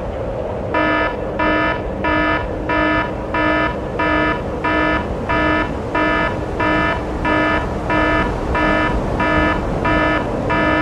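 An electronic alarm beeping, about three beeps every two seconds, starting just under a second in. A steady noise runs underneath.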